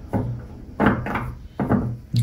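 Three soft knocks, about a second apart, from a tarot deck and cards being handled against a tabletop.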